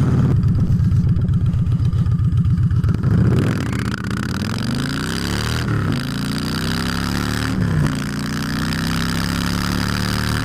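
Victory Jackpot's V-twin engine heard from the saddle while riding. It pulses low and lumpy for the first few seconds, then climbs in pitch as it accelerates, dropping briefly at two upshifts about halfway through and again a couple of seconds later, and then runs on steadily.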